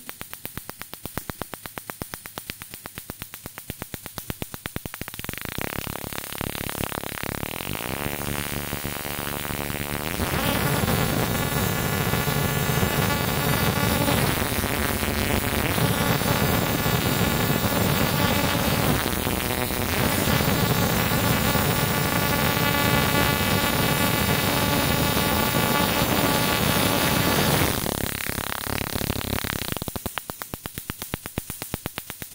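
Spark plug firing from an ignition coil driven by a CDI module and a coil interrupter: a fast train of snapping sparks that speeds up into a steady, high-rate buzz about ten seconds in and drops back near the end. The spark rate is being turned up to test whether the coil keeps firing at high frequency.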